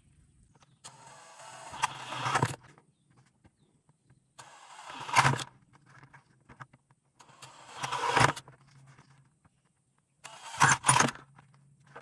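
Cordless drill with a spade bit boring four holes through the bottom of a plastic five-gallon bucket. There are four runs of a second or two each, about three seconds apart, and each grows louder toward its end.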